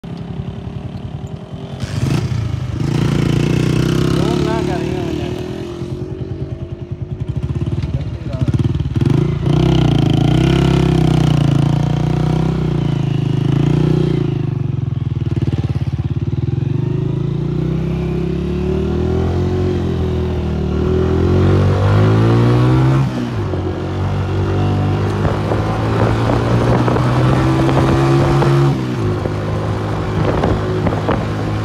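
Motorcycle engine running under way on a loose sand track, its pitch climbing and then dropping suddenly about two-thirds of the way through, as with a gear change, and stepping again near the end.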